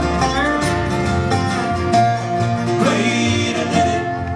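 Bluegrass band playing an instrumental passage: a resonator guitar (dobro) plays a melody with sliding notes over mandolin, acoustic guitars and upright bass.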